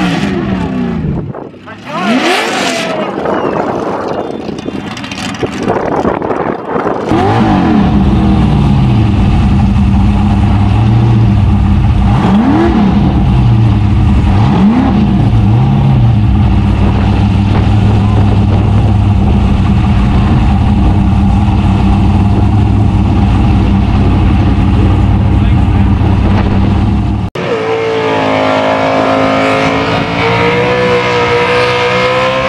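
A burnout car's carburetted engine heard up close from on board: revved in sharp rising and falling blips for the first few seconds, then running steadily with two quick rev blips about halfway through. Near the end it cuts suddenly to another car's engine held at steady high revs during a burnout.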